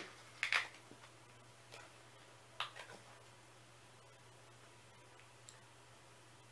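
A few brief clicks and scrapes of a small perfume sample vial and its packaging being handled and worked open, spaced out over several seconds, with a low steady hum underneath.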